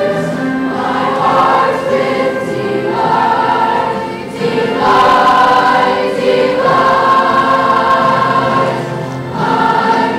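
Student choir singing long held notes in phrases, with brief breaks between phrases about four and nine seconds in.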